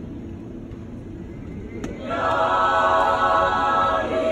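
High school choir entering about two seconds in on a loud, sustained chord of many held voices, after a quiet stretch of low room noise.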